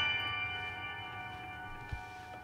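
Upright piano's high notes left ringing after a quick run, fading slowly, with a faint click near the end.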